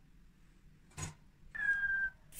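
A short click about a second in, then a brief, thin, high-pitched squeal that falls slightly in pitch near the end.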